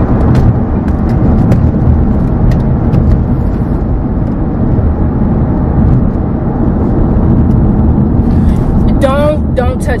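Loud, steady low rumble of a car being driven, heard from inside the cabin, with a few faint clicks in the first few seconds.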